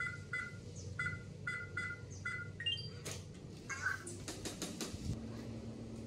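Digital smart door lock keypad beeping once per key press as a code is entered, about six short beeps. A quick rising three-note chime follows as the lock accepts the code, then a few sharp clicks from the lock mechanism.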